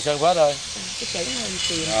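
A man speaking in short phrases over a steady high-pitched hiss.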